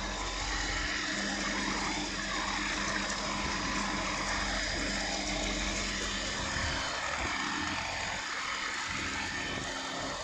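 Kamco power flush machine's electric pump running steadily, circulating descaler through the boiler: a continuous hum with several held tones.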